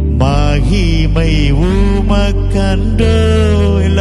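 A man singing a slow devotional song into a microphone, his voice sliding and wavering on held notes over steady low backing notes.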